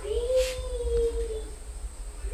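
A high, drawn-out vocal sound held at one pitch for about a second and a half, then falling away, with a brief hiss of noise partway through.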